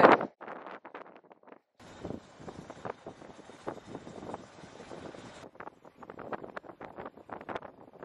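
Gusty wind buffeting the microphone in a sailboat's cockpit, uneven and fairly quiet, with a steadier hiss from about two seconds in that stops suddenly about five and a half seconds in.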